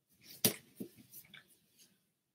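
A few faint, short clicks and ticks, the sharpest about half a second in, between stretches where the livestream audio drops out entirely: the stream's sound is glitching.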